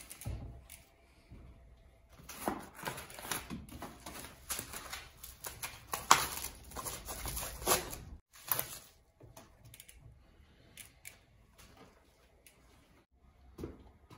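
Plastic wrap and packing protectors being handled and pulled off a bicycle frame: irregular crinkling and rustling with sharp clicks, busiest in the first half and sparser toward the end.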